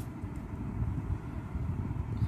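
Low, uneven background rumble with a faint click at the start.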